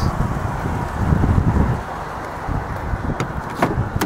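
Wind rumbling on the microphone outdoors, then two sharp clicks near the end as a car's driver door latch is released and the door swings open.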